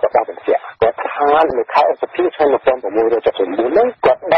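Speech only: a voice talking continuously, with the narrow, thin sound of a radio news broadcast.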